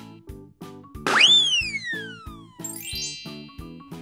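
Cheerful children's background music with a steady beat. About a second in, a cartoon boing sound effect shoots up in pitch and then slides slowly down. Near three seconds, a short rising tinkling sweep follows.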